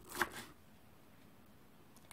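A knife chopping parsley on a plastic cutting board: a brief burst of quick strikes just after the start, then near silence.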